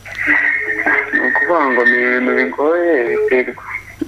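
A phone caller talking through a mobile phone's speaker held up to a microphone; the voice sounds thin, with little in the upper range.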